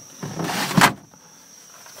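Retractable cargo cover sliding briefly: a short rasp that rises and ends in a sharp click just under a second in.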